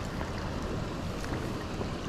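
Steady rush of shallow river current flowing over stones.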